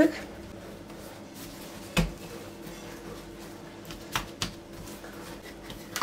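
Mantı dough being handled on a countertop as it is shaped from a ball into a log: one soft thump about two seconds in, then a couple of light taps a little after four seconds.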